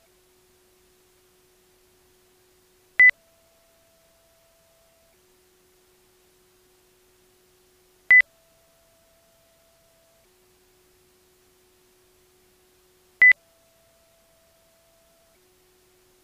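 Short electronic beep, three times about five seconds apart, over a very faint steady tone that steps back and forth between a lower and a higher pitch every couple of seconds.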